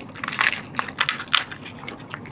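Crisp, hollow pani puri shells cracking and crunching as they are broken open and eaten. There are several sharp crackly crunches, the loudest about half a second in and again a little past the middle.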